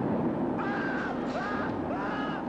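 A film-soundtrack explosion and fire roar, swelling at the start into a steady rushing noise. Several short pitched notes sound over it.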